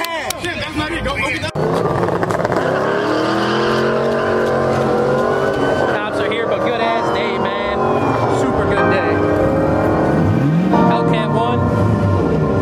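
Car engines running at a street-race lineup, with voices around them. About ten and a half seconds in, one engine revs up and drops back quickly.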